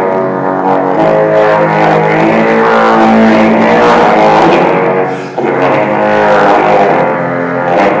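Bass trombone playing long, sustained low notes, with a short break about five seconds in before the next note.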